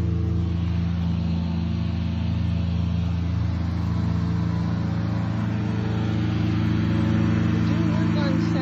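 Lawn mower engine running steadily in the background at an unchanging pitch.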